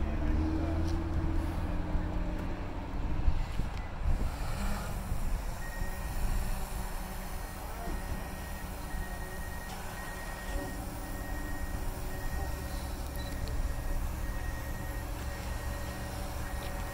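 Small quadcopter drone lifting off the pavement and hovering low, its propellers giving a steady whirring hum from about five seconds in.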